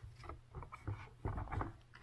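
Faint plastic handling sounds as a pleated filter is seated back into a robot vacuum's plastic dustbin: a few soft scrapes and taps over a steady low hum.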